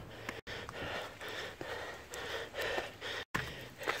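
Heavy, fast breathing of a man out of breath while climbing steep trail steps, about two breaths a second. The sound cuts out twice for an instant.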